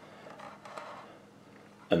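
Quiet room tone with a few faint soft ticks, like light handling at a counter, in the first second. A man starts speaking right at the end.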